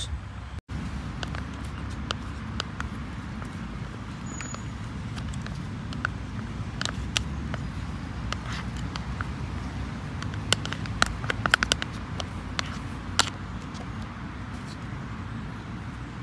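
Steady low rumble of road traffic, with a run of light clicks and scrapes through the middle as a metal spoon scoops sauce from its pot onto pasta in a metal mess tin.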